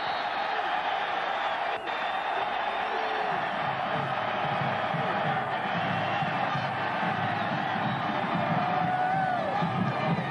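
Large stadium crowd cheering a touchdown, with band music and a pulsing beat coming in a few seconds in.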